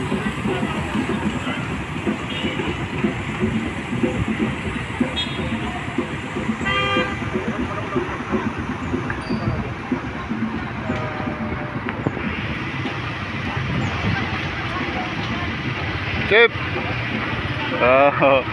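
Vehicles driving slowly past with steady engine and road noise, and a short vehicle-horn toot about seven seconds in, with a fainter horn tone a few seconds later.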